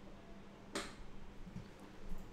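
A single short, sharp click about three-quarters of a second in, over a faint steady electrical hum.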